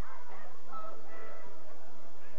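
Faint, distant voices of spectators calling out across the ground, over a steady low electrical hum in the old camcorder recording.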